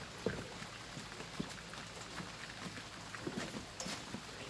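Light rain pattering, with scattered faint drips and ticks over a soft steady hiss.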